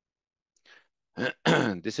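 A man clears his throat once, briefly, then starts speaking.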